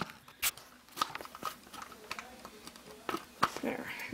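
A few light knocks and clicks of handling. The first, sharpest one comes right at the start as a camera is set down on a wooden tabletop, followed by scattered small clicks as an RC truck's wheel parts are handled.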